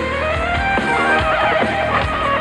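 Live rock band playing an instrumental passage with drums and bass, and a high lead line that bends and wavers in pitch.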